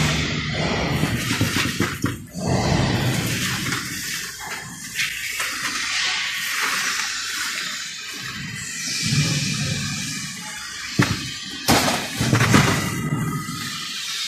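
Crisp vacuum-fried snacks tumbling out of the fryer's mesh basket onto a metal tray and being spread by hand: a dry rustling clatter, with a few sharp knocks near the end.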